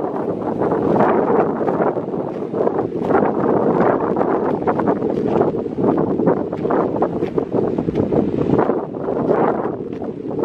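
Wind blowing on the camera's built-in microphone: a continuous rushing noise that rises and falls in gusts.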